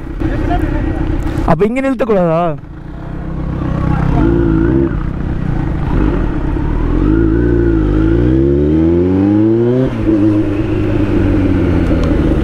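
Motorcycle engine running at low riding speed, its revs climbing steadily for a few seconds and then dropping off suddenly near the end. A short voice call comes about two seconds in.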